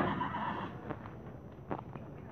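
Horse neighing briefly at the start, then a couple of short, sharp knocks.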